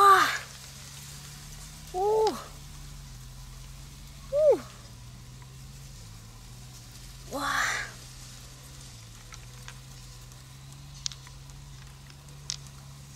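An animal calling: short cries that rise and fall in pitch, four of them a couple of seconds apart, over a steady low hum. Two faint clicks come near the end.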